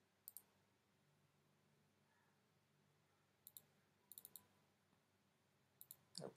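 Faint, sharp computer mouse clicks, mostly in quick pairs like double-clicks. There is one pair near the start, a pair and then a short run of clicks between about three and a half and four and a half seconds in, and another pair near the end.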